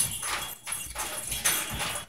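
Senegal parrot biting and crunching a fresh snap pea with its beak, a run of crisp, irregular crunches several times a second.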